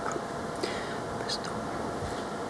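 Faint whispered talk close to a lectern microphone over steady room hiss, with a few soft hissing consonants.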